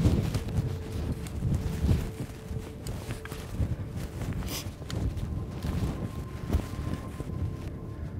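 Short-handled digging tool repeatedly chopping into loose dry sand, with the scrape and swish of scooped sand being flung aside as a pit is dug.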